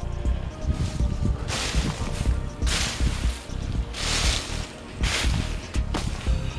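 Footsteps crunching through deep dry leaf litter and wood-chip mulch, about four steps roughly a second apart, over faint steady background music.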